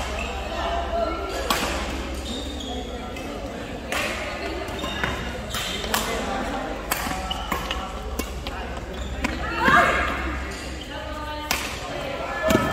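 Badminton rackets hitting a shuttlecock, sharp cracks every second or two, echoing in a large hall, with short squeaks of court shoes on the floor about ten seconds in, over the talk of players and spectators.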